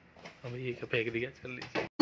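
A man's voice: a short exclamation followed by a few pulses of laughter, ending in an abrupt cut.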